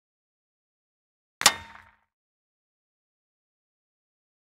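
Silence broken about one and a half seconds in by a single short sound effect: a sharp hit with a brief ringing tail that dies away within half a second.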